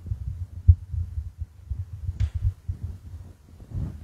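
Handling noise from a handheld microphone as it is taken off its stand and carried: a run of irregular low thumps and bumps, with a brief rustle about two seconds in.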